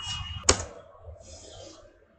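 A single sharp computer keystroke click about half a second in, over a low steady room hum.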